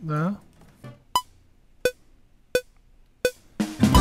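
DAW metronome count-in: four short pitched clicks about 0.7 s apart, the first higher-pitched as the accented downbeat. Acoustic guitar strumming comes in near the end as the take starts.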